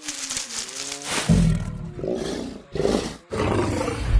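Cartoon dinosaur roaring in several loud, deep bursts with short breaks between them, starting about a second in.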